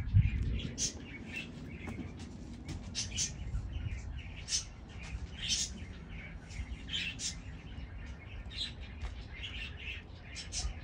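Small birds chirping, with short high calls scattered throughout. A low rumble sounds briefly at the start.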